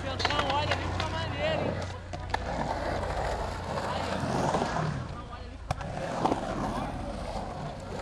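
Hard wheels rolling over a concrete skate-park floor, a steady rough rumble through the middle of the clip, with a couple of sharp clacks, one a little after two seconds in and one near six seconds.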